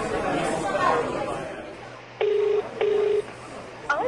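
Crowd chatter, then a telephone ringback tone: two short, low steady tones in quick succession a little past halfway, the double-ring cadence of a call ringing at the other end of the line.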